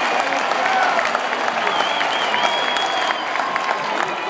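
Large stadium crowd applauding and cheering: a steady wash of clapping with high shouts rising over it.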